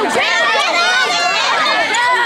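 A crowd of children and teenagers shouting and cheering all at once, many high voices overlapping.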